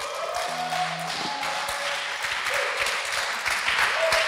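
A small group of people clapping and cheering at the end of a song, with a few held tones lingering underneath.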